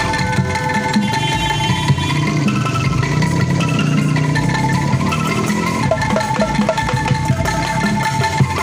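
Bamboo angklung ensemble playing a song: rapid pitched bamboo notes from a rack of angklung and a bamboo xylophone over a steady low bass part.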